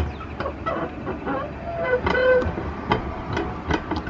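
A ribbed plastic log roller on playground equipment knocking and clacking irregularly as a man stands on it and it rolls under his feet. Laughter comes in just past the middle.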